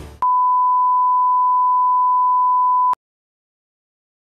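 A single steady electronic beep at one pure mid pitch, held for about two and a half seconds and cut off abruptly, like a reference test tone. Dead silence follows.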